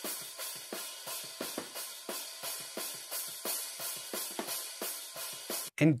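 Overhead track of a MIDI drum kit playing a fast, even beat of about four hits a second under a wash of cymbals, with almost no low end. A high-shelf EQ cut is taking down the top end to darken the cymbals so they sound more realistic.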